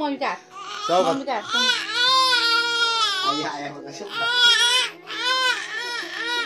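Infant crying in loud, high, arching wails, one long wail about a second and a half in, then shorter sobs near the end.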